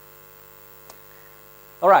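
Steady electrical mains hum through a pause in the talk, with one faint click about a second in; a man's voice starts speaking at the very end.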